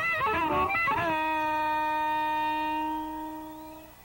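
Live blues electric guitar: a quick lick of bending notes, then one long held note that fades away near the end.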